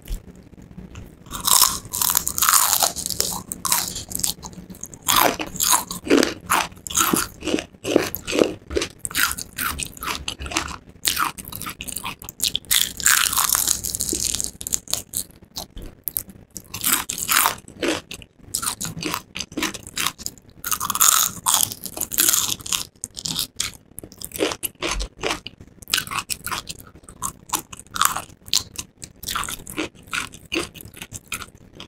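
Close-miked bites and chewing of crispy breaded fried chicken: the crust crunches and crackles in quick irregular bursts throughout.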